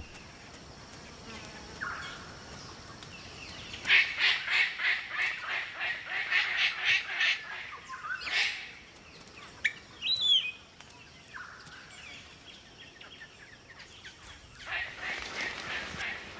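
Palm cockatoo calling: a run of quick, harsh calls about three a second, then one louder call and a short whistle, with more calls near the end.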